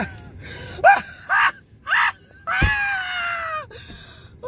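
A man laughing hysterically and breathlessly: three short wheezing bursts, then one long high-pitched laugh that slowly falls in pitch. A thump comes about two and a half seconds in.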